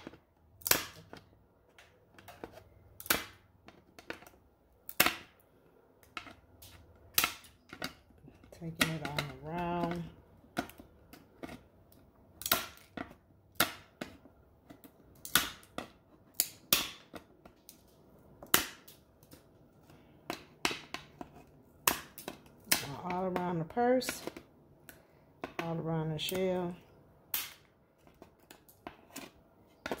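Nippers snipping cured resin drips off the edges of a resin-coated plastic purse shell: a series of sharp clicks, irregularly spaced at about one or two a second.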